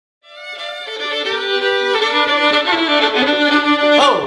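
Two fiddles playing an old-time fiddle tune together, fading in from silence just after the start.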